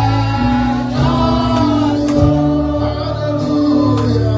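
Gospel worship song: a choir and congregation singing together over sustained instrumental backing, with a few sharp beats.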